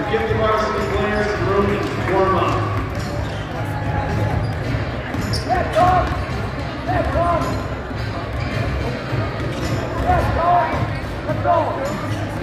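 Basketballs bouncing on a hardwood gym floor, several irregular thuds scattered through, over a steady din of voices echoing in the gym.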